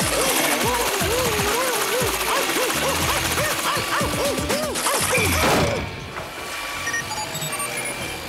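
Cartoon comedy music full of springy pitch swoops that bounce up and down a few times a second. About six seconds in it drops away to a quieter bed of short electronic beeps from the flea-seeking robot comb as it scans.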